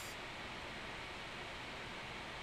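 Steady faint hiss of background noise (room tone), with no distinct events.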